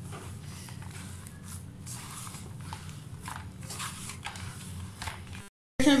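A hand squeezing and kneading a mashed potato and flour mixture in a steel bowl: soft, irregular squelching and patting. The sound cuts out briefly near the end.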